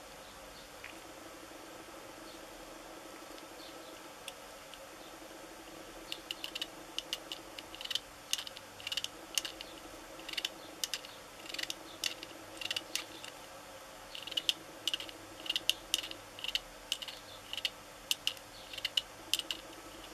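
Small hard clicks and taps of a 3D-printed UV-resin model unicycle's parts knocking together as it is handled and worked in gloved hands. The clicks come in quick irregular clusters from about six seconds in, over a steady room hum.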